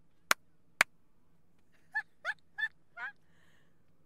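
Three sharp hand claps in the first second, then four short, high-pitched squeaky laughs about two to three seconds in, each bending up and down in pitch.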